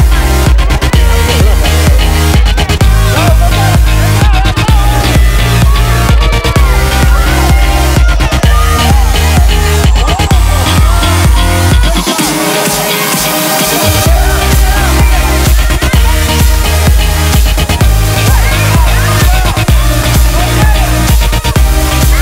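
Electronic dance music with a steady beat and heavy bass. A rising sweep builds over several seconds into a brief break where the bass drops out, then the full beat comes back.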